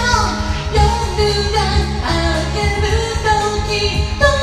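A woman singing a Japanese pop song over a band backing track with bass and a steady beat.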